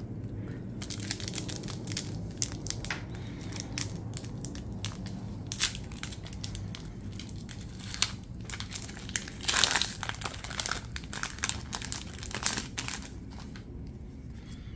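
Foil wrapper of a Pokémon booster pack crinkled and torn open by hand: a run of sharp crackles, densest and loudest about ten seconds in.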